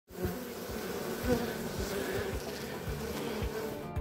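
A swarm of honeybees buzzing: a steady, many-voiced hum of bees in flight and clustered together.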